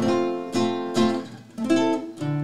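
Acoustic guitar played live: a few plucked chords struck and left to ring, the opening of a corrido, with a brief lull about a second and a half in before the next chord.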